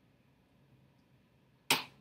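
Very quiet room tone, then near the end a single sharp knock that dies away quickly: a mug being set down on a tabletop.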